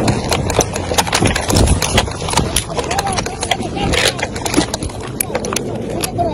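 Rapid, irregular rifle fire in a close-range firefight, many shots in quick succession, with men shouting in between.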